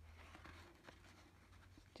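Near silence: faint rustling of cardstock being handled, with a low hum early on.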